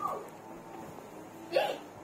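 A person's voice trails off at the start, then a single short vocal sound comes about one and a half seconds in, over quiet room sound.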